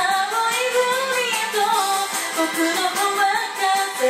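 A woman singing a J-pop song in Japanese over a pop backing track, the sung melody gliding up and down throughout.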